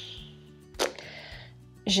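Soft background music with low sustained notes that shift in pitch, and a short click a little under a second in.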